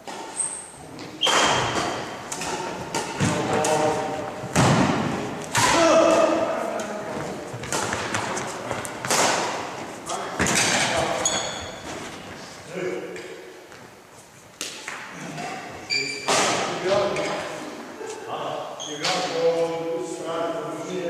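Badminton rackets striking a shuttlecock during doubles play, a series of sharp hits echoing around a large sports hall, with players' voices between them.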